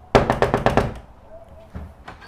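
Knuckles knocking on a wooden door: a quick run of about seven raps in under a second, then a couple of fainter clicks near the end.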